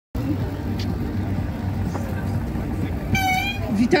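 City street noise: steady traffic rumble and passers-by's voices, with one short, high horn toot about three seconds in.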